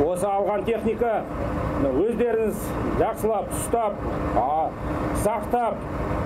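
A man speaking into a microphone outdoors in a steady stream of speech, over a continuous low rumble.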